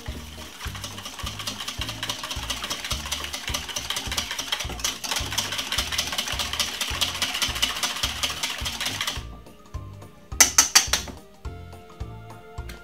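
Wire balloon whisk beating eggs and milk in a stainless steel bowl: a fast, even clatter of wires against the metal that stops about nine seconds in. A few sharp taps follow.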